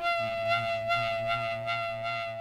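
A lesiba, the mouth-resonated string instrument with a vulture quill played by Sotho shepherd boys, holding one long note rich in overtones with a slight regular pulsing.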